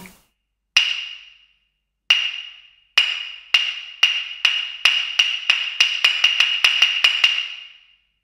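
A high, single-pitched wooden knock struck over and over, each strike ringing briefly. It starts with two strikes more than a second apart, speeds up steadily to about five a second, and stops just before the end.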